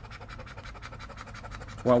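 A scratch-off lottery ticket being scratched with a round poker-chip scratcher: quick, repeated scraping strokes over the card.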